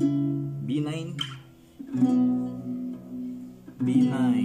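Acoustic guitar chords plucked and left to ring. One chord fades out, a new chord is struck just under two seconds in and rings on, and another is struck near the end.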